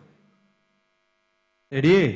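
A faint steady hum from the stage sound system in a near-silent pause after music fades out. Near the end, a man's voice starts speaking.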